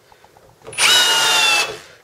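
Cordless combi drill running in a short burst of about a second, its motor whine sagging slightly in pitch before it stops, as it spins a wood screw.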